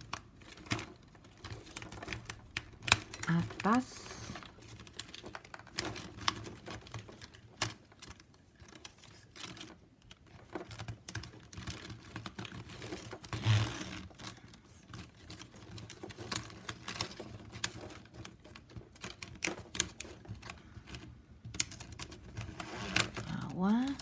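Plastic strapping band clicking, rubbing and snapping as strips are threaded and pulled through a tight hand weave, with irregular sharp clicks throughout and a louder scrape about halfway through.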